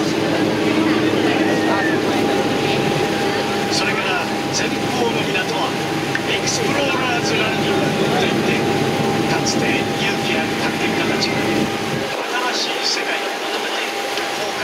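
A tour boat's engine running with a steady low drone and a thin steady whine, under the murmur of passengers' voices. The deepest part of the drone drops away near the end.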